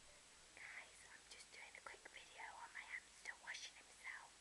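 A person whispering softly, a run of short phrases starting about half a second in.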